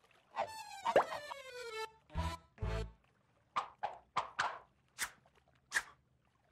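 Cartoon sound effects over light music: sliding pitched tones in the first two seconds, two low thuds a little after two seconds in, then a run of six short plops in the second half.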